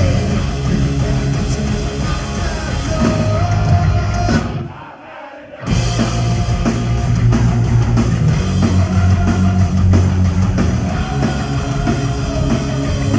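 Live rock trio of electric guitar, electric bass and drums playing at full volume. About four and a half seconds in, the band stops dead for about a second, then comes crashing back in.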